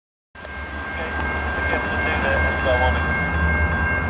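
A steady low rumble with a constant high-pitched whine, fading in at the start, with faint voices in the background.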